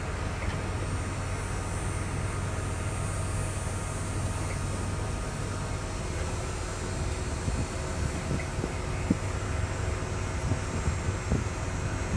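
A steady low motor hum, with wind buffeting the microphone in short low thumps in the second half.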